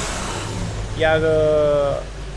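A minivan driving slowly past close by, its engine running with a steady low rumble and tyre noise; about a second in, a man's long drawn-out word comes in over it.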